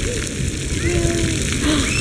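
Splash-pad water jets spraying and splattering onto wet concrete, a steady hiss of falling water, with faint short bits of children's voices about a second in.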